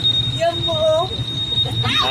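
Motorcycle smartkey anti-theft alarm sounding a steady, high-pitched electronic tone, set off by touching the parked bike while the shock alarm is armed.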